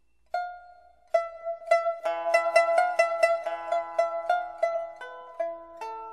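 Solo pipa playing: two single plucked notes ring out in the first second or so, then a quick run of rapidly repeated plucks on a few pitches begins about two seconds in and slows again near the end.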